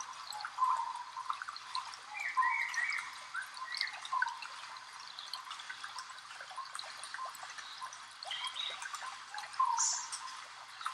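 A small mountain stream running and trickling, a steady hiss of water with scattered gurgles.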